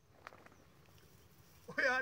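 Mostly quiet, with one faint click a quarter of a second in, then a man starts speaking in Punjabi near the end.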